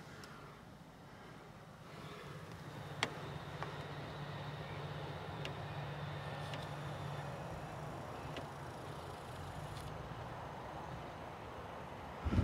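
An engine running steadily, heard as a low hum that grows a little about two seconds in and then holds. A single sharp click comes about three seconds in.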